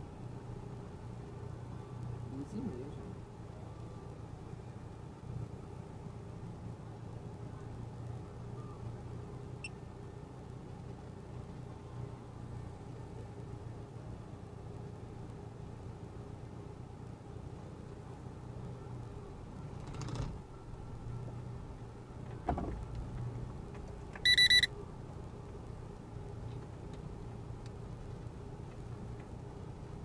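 Car engine running steadily at low speed, heard from inside the cabin while driving a rough dirt track, with a couple of knocks from bumps about two-thirds of the way through. A short, loud electronic beep sounds near the end.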